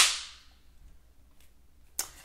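A single sharp crack, with a hissing tail that fades over about half a second, then quiet until a short click at the end.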